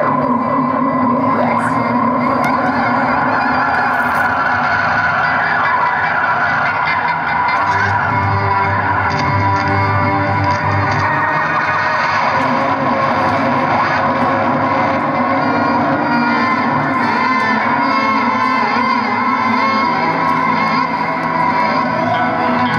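Live band playing a steady instrumental passage of acoustic and electric guitars, with long held notes.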